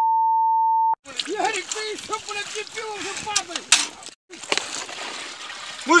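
A steady, high-pitched censor beep blots out a swear word for about the first second and cuts off suddenly. Men's voices talking follow, with a brief dropout about four seconds in.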